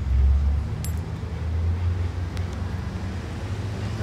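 Low rumble of road traffic, loudest about the first half-second, with a couple of faint light clicks.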